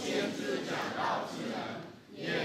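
A man speaking in Chinese.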